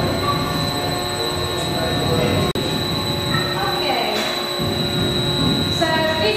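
Cross-compound mill steam engine running steadily, giving a continuous mechanical running noise from its valve gear and moving parts, with a brief break in the sound about halfway through.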